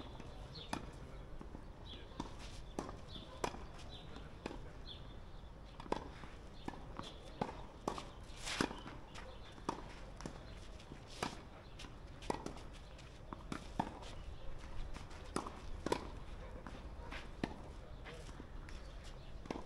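Tennis warm-up rally on a clay court: sharp racquet strikes and ball bounces, roughly one every half second to a second, over a steady low rumble.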